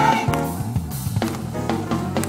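Gospel band playing between the choir's sung lines: drum kit hits over a moving bass line, with the choir's held note fading out right at the start.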